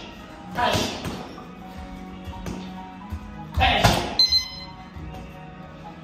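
Strikes landing on a hanging heavy bag, each with a sharp hissing exhale, over background music. There is one strike about a second in and a harder flurry around four seconds in, followed by a brief metallic ring.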